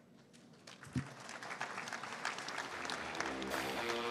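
Audience applause starting softly about a second in and building steadily, after a brief low thump. Guitar music fades in under the clapping near the end.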